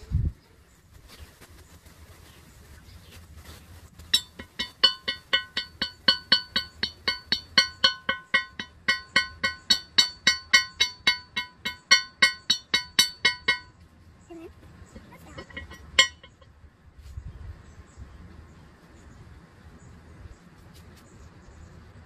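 Hand hammer striking a piece on a small steel anvil in a steady run of blows, about three a second, each with a bright metallic ring, for about nine and a half seconds. A single further blow follows a couple of seconds later.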